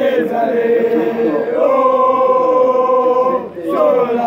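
A group of male football supporters chanting together in unison. About halfway through they hold one long note; it breaks off briefly near the end before the chant picks up again.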